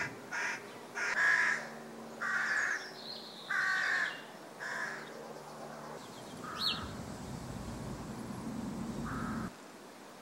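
Rooks cawing from a rookery in the treetops: a run of short calls about one a second, then fewer and fainter calls over a low rumble in the second half.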